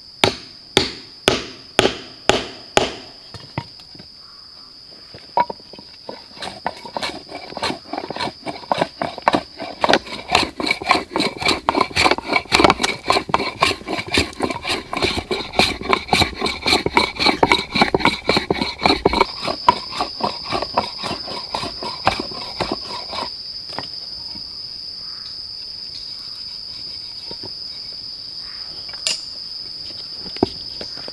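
A mallet driving a chisel into a wooden plank, about six sharp blows in the first three seconds. Then, from about six seconds in until about twenty-three, a fast, even run of strokes as a stone block is worked back and forth over the plank's surface. A steady high insect drone runs underneath throughout.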